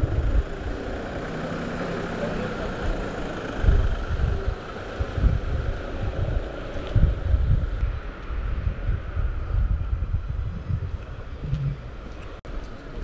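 Wind buffeting the microphone in irregular low rumbling gusts over a steady outdoor background hum.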